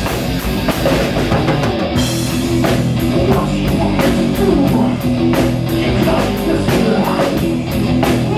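Live rock band playing an instrumental passage: amplified electric guitar and bass guitar over a drum kit keeping a steady beat of drum and cymbal hits, loud and unbroken.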